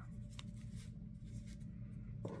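Faint handling of paper stickers: light rustling and a few soft ticks as a sticker is picked up, over a low steady room hum.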